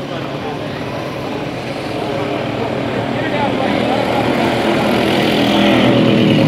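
A motor vehicle's engine running nearby, getting louder from about two seconds in as it comes closer, over street noise and faint voices.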